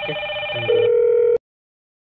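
Hikvision video intercom indoor station ringing for a call between the two screens: an electronic ring made of several steady tones together, with a louder, lower tone joining partway. It cuts off suddenly about a second and a half in.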